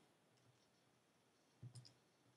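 Near silence broken by faint clicks of calculator keys being pressed, a quick pair of taps about one and a half seconds in.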